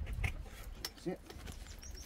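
Packaging being handled: a padded telescope case in plastic wrap lifted out of a cardboard box, giving a few light clicks and rustles over a low rumble.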